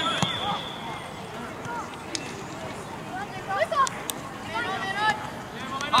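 Scattered, fairly distant voices calling out across an open-air youth football pitch, over a steady outdoor background hiss, with a few faint knocks.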